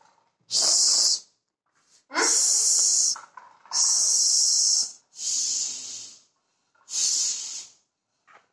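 Floor-standing bike pump worked by hand, five strokes, each giving a hiss of air about a second long with short silent pauses between.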